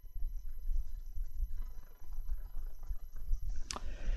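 Low, uneven rumble of microphone background noise under faint steady high-pitched electronic whines, with one short sharp click near the end.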